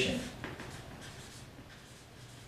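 Felt-tip marker writing a word on flip-chart paper: faint strokes and scratches of the tip on the paper.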